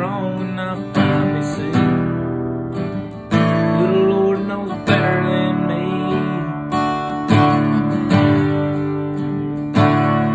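Acoustic guitar strummed, a chord struck every second or so and left to ring.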